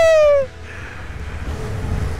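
A man's high, drawn-out falsetto cry, falling slowly in pitch and cutting off about half a second in. After it, the low hum of a Yamaha MT-07's parallel-twin engine on its stock exhaust, mixed with wind, grows slowly louder.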